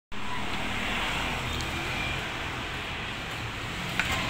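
Steady road traffic noise along a street, an even hum of passing cars.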